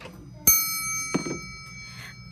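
A small metal bell struck once about half a second in, ringing with several clear high tones that fade away over about a second and a half.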